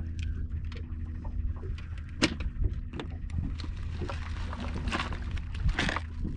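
Light clicks and knocks of fishing tackle being handled in a small boat, over a steady low rumble. One sharper click comes about two seconds in, and a grainy hiss builds near the end.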